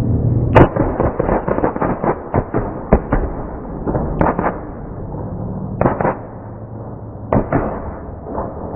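A volley of shotgun blasts fired by a group of gunmen. About half a second in comes a fast, ragged run of a dozen or so shots lasting about two and a half seconds, followed by a few scattered single shots and pairs.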